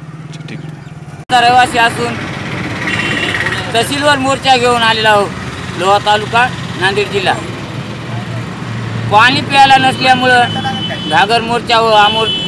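A man speaking to the camera, after an abrupt edit cut just over a second in, over a steady low hum.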